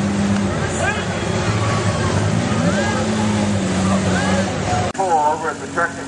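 Off-road vehicle engine running in a mud pit at a steady pitch with crowd voices over it. The engine dips about half a second in, then climbs back up and holds. About five seconds in the sound cuts off abruptly to voices and a lower, steady engine hum.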